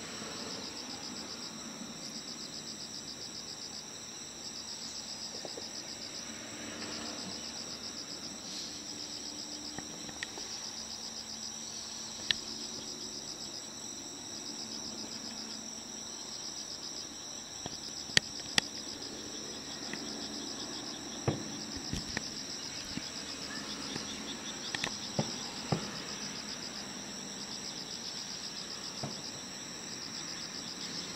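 Insects chirping steadily in a high, pulsing trill, under sharp pops from distant fireworks bursting. The pops are scattered and most come in the second half, the loudest about 18 seconds in.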